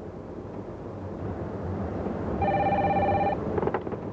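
A car phone rings once about two and a half seconds in, a steady electronic ring lasting just under a second, over the low, steady road and engine noise inside a moving car.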